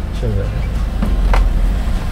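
Low engine and road rumble inside the cab of a Kia manual-transmission truck driving off in first gear, with a single sharp click past the middle.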